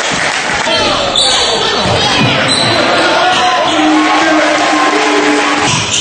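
Game sound of a basketball game in a gym: a ball bouncing on the court and voices, echoing in the hall. The sound changes abruptly near the end.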